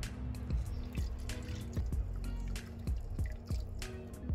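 Coconut oil pouring in a thin stream into a large metal wok, trickling and dripping onto the pool of oil in the bottom, with background music.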